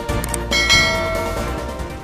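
Background music with a bright bell chime about half a second in, ringing and dying away, the notification-bell sound of a subscribe animation; the music fades near the end.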